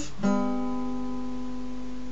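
Acoustic guitar with a capo: a G chord plucked once about a quarter second in and left to ring out.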